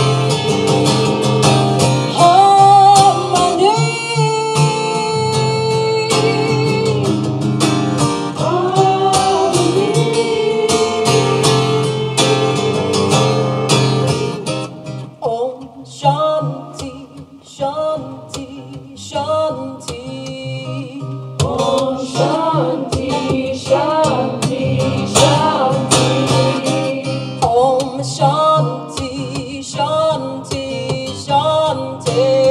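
A woman singing a kirtan chant to her own strummed acoustic guitar, the sound reverberating off the slot-canyon walls. About halfway through the music thins out and drops in level, then builds again.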